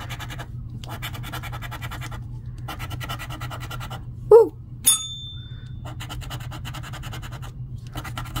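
A coin scraping the scratch-off coating of a paper lottery ticket in rapid back-and-forth strokes, in three runs with short pauses between them. Around the middle there is a brief voiced sound, then a click and a short ringing ping.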